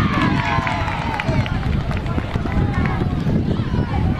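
Players and spectators shouting and calling during open play on an outdoor rugby pitch. There is one long falling call in the first second or so, over a steady low rumble of wind on the microphone.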